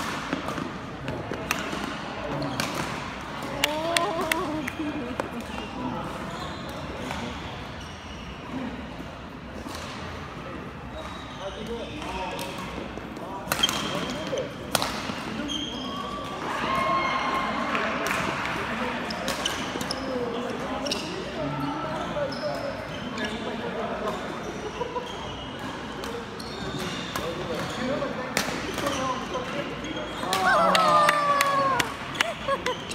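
Badminton rackets striking a shuttlecock during a doubles rally: sharp cracks at irregular intervals, heard over steady background chatter in a large hall.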